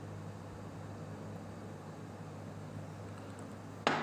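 Steady low hum and faint hiss of room noise while viscous glycerin is poured, the pour itself making no clear sound. A single sharp knock comes near the end.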